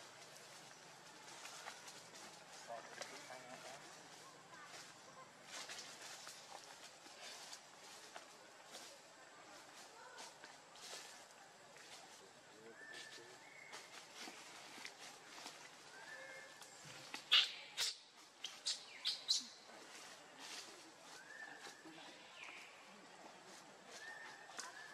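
Faint outdoor ambience with occasional short bird chirps and scattered soft clicks. About seventeen seconds in comes a quick run of sharp clicks or crackles, the loudest sound here.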